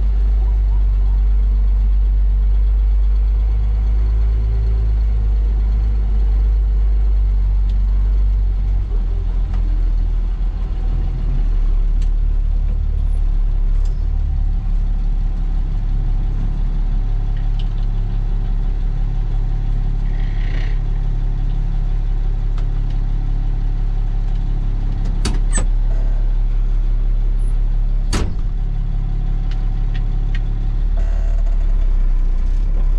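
Work truck's engine and drivetrain running steadily as it is driven, heard from inside the cab as a loud, constant low rumble. A few sharp clicks come near the end.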